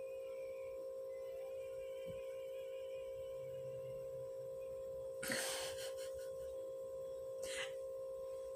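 A person sniffing perfume mist sprayed into a bottle cap: one sharp sniff about five seconds in and a shorter one near the end, over a faint steady hum.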